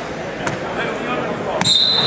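Gym crowd noise, then about one and a half seconds in a sharp slap on the wrestling mat followed by a steady, high referee's whistle blast: the referee signalling a fall (pin).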